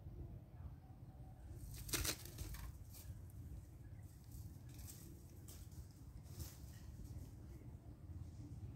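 Leafy shrub branches rustling as a young macaque climbs in them: one longer rustle about two seconds in, then short scattered rustles, over a low steady rumble.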